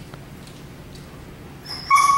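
German Shepherd dog giving a short, high whine near the end, one steady pitch lasting well under a second.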